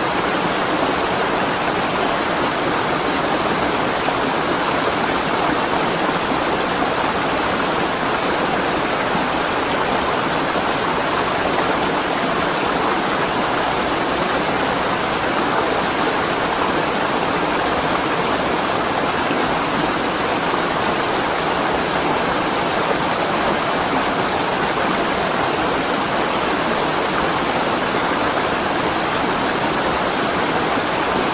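Steady loud rushing of a fast cold lahar, a volcanic mudflow of water, ash and rock, pouring past in a continuous wash of noise.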